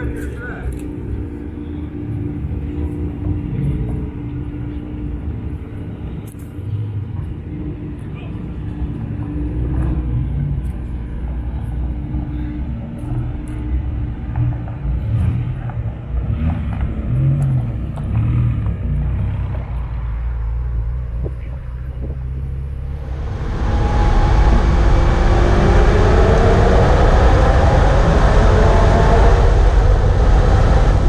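Car engines idling with people talking around them. Some 23 seconds in it cuts to a loud Ferrari engine heard from inside the cabin, accelerating with its note rising steadily.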